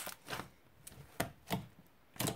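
Thick slime being squeezed and kneaded by hand, giving a quick series of short sticky squelches and pops, about five in two seconds.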